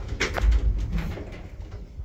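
An elevator's manual swing landing door being unlatched and pushed open: clicks and a short rising squeak, then a heavy clunk about half a second in.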